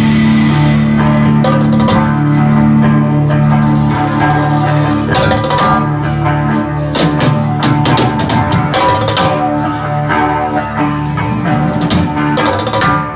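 Live rock band playing an instrumental passage on electric guitars, bass guitar and drum kit. Long held low notes fill the first few seconds, and the drums grow busier with frequent cymbal and snare hits from about five seconds in.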